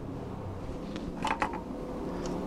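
Light handling sounds of a power cable being fed along a telescope mount: a few faint clicks and rustles, clustered about a second in. Under them runs a steady low hum.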